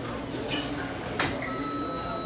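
Fast-food restaurant background noise with faint talk, a sharp clatter a little past the middle, and a steady electronic beep that starts near the end and holds for about a second.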